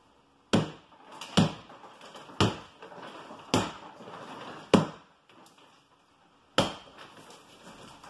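A metal bar striking an old horsehair plaster wall six times at uneven intervals, each blow followed by a short crumble of breaking plaster, as the wall is knocked through.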